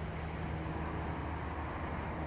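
Steady low rumble of outdoor background noise with a faint even hum, and no distinct event.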